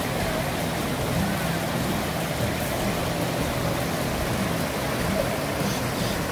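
Steady rush of a small mountain river pouring over rocks into a pool.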